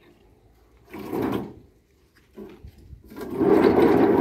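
Granite fencing posts scraping against stone as they are slid off a tractor trailer: a short scrape about a second in, then a longer, louder one from about three seconds in.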